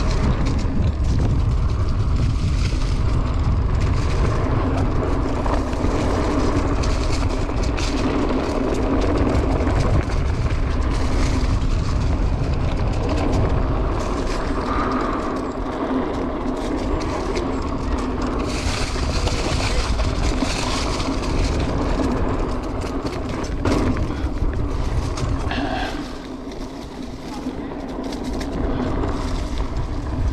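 Mountain bike ridden fast down a dirt trail, heard from a camera mounted on the rider: wind buffeting the microphone in a steady low rumble, tyres rolling over packed dirt and dry leaves, and frequent rattles and knocks as the bike goes over bumps. It eases off a little near the end.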